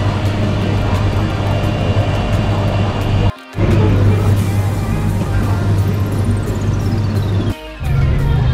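Background electronic music with a steady heavy bass, cutting out briefly twice, about a third of the way in and just before the end, with a falling sweep leading into the second break.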